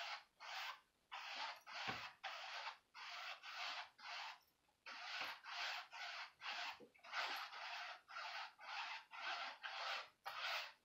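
Paintbrush loaded with acrylic paint stroking back and forth across a canvas: a faint, scratchy rub about twice a second.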